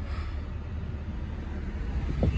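Steady low rumble of a 2017 Hyundai Tucson's engine idling, heard from inside the cabin.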